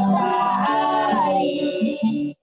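A man and two young girls singing a hymn in Indonesian to acoustic guitar, the voices settling into a long held note in the second half.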